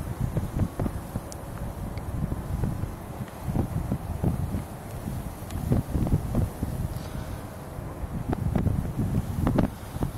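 Wind blowing across the camcorder's microphone in uneven low gusts.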